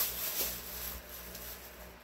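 Faint handling noise of groceries being unpacked, with a small click in the first half-second, fading over the first second to low room tone.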